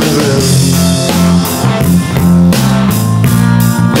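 Rock instrumental passage between sung lines: electric guitar chords ringing over a steady drum beat.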